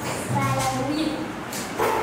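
A child's voice speaking two short phrases.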